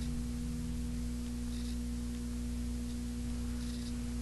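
Steady electrical hum: one unchanging low tone with fainter overtones above and below it, over faint room noise.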